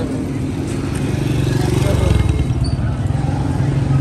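A low, steady engine rumble that grows somewhat louder from about a second in.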